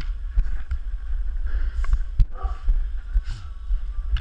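Low, steady rumble of handling and movement noise on a body-worn camera's microphone, with scattered light knocks and taps and a couple of breaths, and a short "uh" just past halfway.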